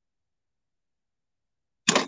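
Dead silence, the sound cut to nothing, until just before the end, when a short sound with a sudden start cuts in as her voice comes back.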